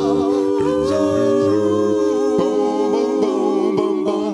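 A five-voice a cappella doo-wop group singing close harmony, holding sustained hummed chords. A few short low pulses sound in the second half.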